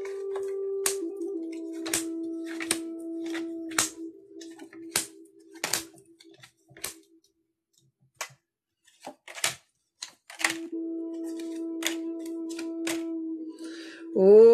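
Tarot cards being shuffled and handled: a run of sharp slaps and clicks over a steady held musical tone. The tone stops about six seconds in, leaving only a few clicks, and comes back about ten seconds in.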